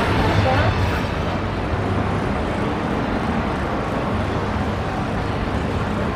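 Steady city-street ambience: a continuous wash of noise with people's voices in it, loudest in the first second, and likely passing traffic.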